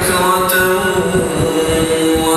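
A man's voice chanting in long held notes, heard through the hall's JBL CBT 50LA column loudspeakers, with an uneven low rumble underneath.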